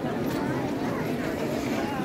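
Crowd of people talking all at once: a steady hubbub of overlapping voices with no single speaker standing out.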